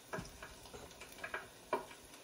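A spoon knocking lightly against a bowl during food preparation: about five irregular short clicks and taps, the loudest near the end.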